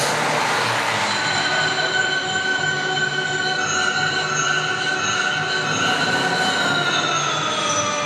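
Racing car engine at high revs in the soundtrack of an old motor-racing film, played over a hall's loudspeakers: a high, sustained whine that slowly falls in pitch near the end.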